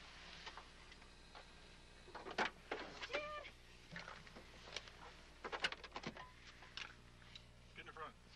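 Car door being opened and a child climbing into the car: a string of clicks, knocks and jacket rustles, with a short pitched sound about three seconds in.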